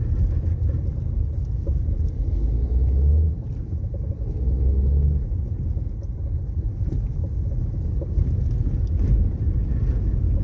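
Low, steady rumble of a car driving slowly over a cobblestone street, heard from inside the cabin, swelling briefly twice a few seconds in.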